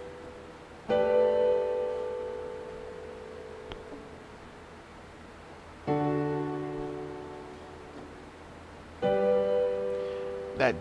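Chords played on a digital keyboard's piano sound, three struck one at a time about three to five seconds apart, each held and left to fade slowly. The last of them is a G major 7.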